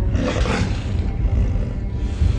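A tiger's roar sound effect: one roar that swells up just after the start and dies away within about a second, over a low rumbling music bed.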